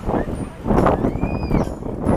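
Small waves washing onto a black volcanic-sand beach, with a short wash just after the start and a bigger, louder surge a little under a second in.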